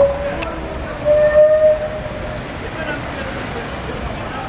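A horn sounding one long, steady note of about a second and a half, over street chatter and traffic.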